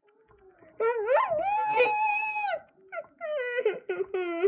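A long, high-pitched wail that rises at the start and is then held level for over a second, followed near the end by a second, shorter wail that falls in pitch.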